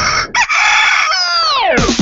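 A recorded rooster crow used as a sound effect: one long crow that holds its pitch and then drops steeply near the end, with music underneath.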